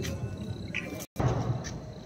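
Faint background of distant music and voices in a lull between fireworks, broken by a moment of complete silence about a second in.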